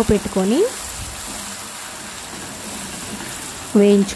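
Tomato and red-chilli chutney frying in oil in a nonstick kadai: a steady, soft sizzling hiss.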